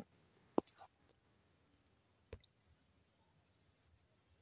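A few short, faint clicks with quiet between them, the two clearest about half a second in and a little past two seconds in.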